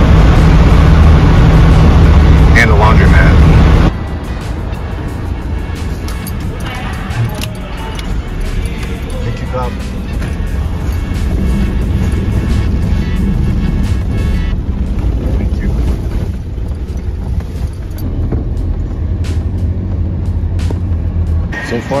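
Vehicle noise heard from inside a pickup truck's cab as it waits on, then drives off, a ferry's car deck: a loud steady low hum for about four seconds drops suddenly to a quieter, uneven rumble with occasional knocks.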